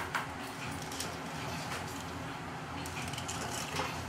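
A mesh dip net of plastic lure bodies handled at a steel pot of hot water for a leak test, over a steady low hum. There are a few light clicks, and a short soft splash near the end as the net goes into the water.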